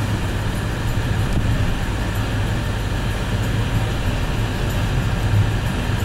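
Car driving along, its engine and tyre noise heard from inside the cabin as a steady low hum.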